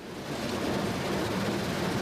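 Automatic car wash spraying water and foam over a car, heard from inside the car: a steady hiss with no rhythm.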